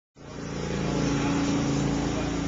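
A steady mechanical hum with a constant hiss, cutting in abruptly just after the start and holding level.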